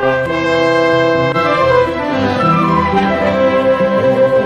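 Chamber orchestra playing a Carnatic piece arranged with Western harmony, joined by a chitravina. Brass holds a full chord from about a quarter second in, then the melody slides down and back up in gliding, slide-lute style.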